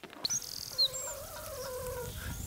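A few short, high chirps from small birds in the first second, over background music holding one steady note.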